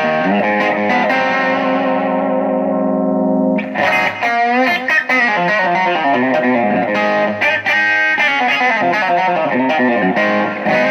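Telecaster-style electric guitar on its bridge pickup with a little overdrive, played in chords: a held chord rings and slowly fades over the first three and a half seconds, then new chords and single notes are picked until the end.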